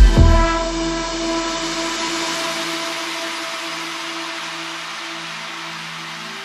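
Future rave electronic dance track: the steady kick drum stops just after the start, leaving a held synth chord over a wash of noise that slowly fades as the track drops into a breakdown.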